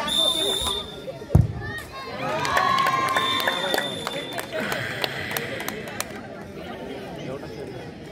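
A short whistle blast, then about a second later a single thud of a futsal ball being kicked from the penalty spot, followed by spectators shouting and cheering.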